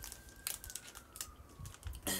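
A small candy packet being handled and opened by hand: scattered crisp crinkles and clicks, the sharpest about half a second in.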